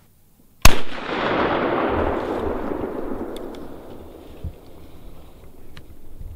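A single shot from a .450 Bushmaster rifle, sharp and very loud, about half a second in, followed by a long rolling echo through the woods that fades away over three to four seconds.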